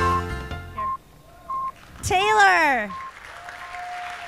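Electronic intro music that stops about a second in, followed by a few short electronic beeps and a pitched swoop that rises and then slides down. A steady held tone follows near the end.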